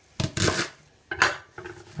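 Kitchen knife chopping leek on a wooden chopping board: two short strokes about a second apart.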